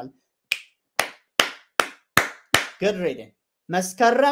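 Finger snapping: six sharp snaps at an even pace, about two and a half a second, then a short voiced sound.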